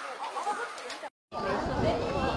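Background chatter of several people talking, cut off by a brief silent gap about a second in, after which the voices are louder.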